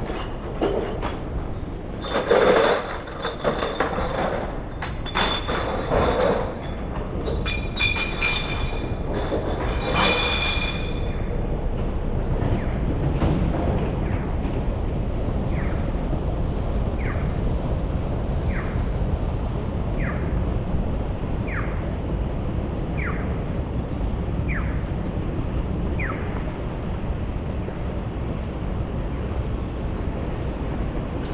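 Low, steady city traffic rumble. In the first ten seconds there is a run of sharp metallic clanks and clinks with a ringing tone. Then comes a Japanese pedestrian crossing signal's electronic guide chirp: eight short falling chirps about a second and a half apart, marking the walk phase.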